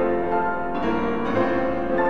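Grand piano played solo, several notes sounding together, with new notes and chords coming in about twice a second.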